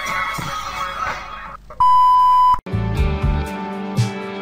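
Intro music fades out, then a single steady electronic beep sounds for just under a second, the loudest thing here. It cuts off abruptly into a new piece of music with low rhythmic beats.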